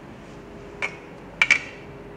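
A large plastic set square knocking against a whiteboard: three short sharp clacks, one a little under a second in and then two in quick succession about half a second later.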